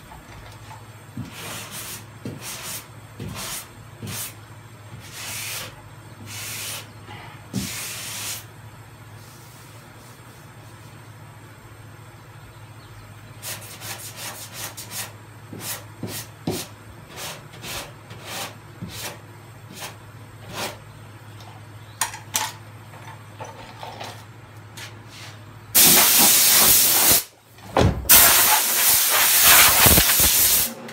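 Hand block-sanding of body filler on a car door: a run of short, irregular sanding strokes. Near the end, a compressed-air blow gun hisses in two long, loud blasts.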